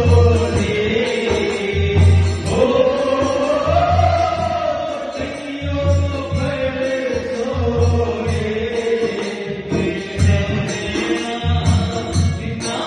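A man sings a chant-like song in long, gliding held notes through a microphone. A double-headed barrel drum (dhol) is played under him in a steady beat, with low strokes about once a second and light high taps.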